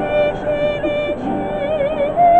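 Soprano singing sustained notes with vibrato over guitar accompaniment.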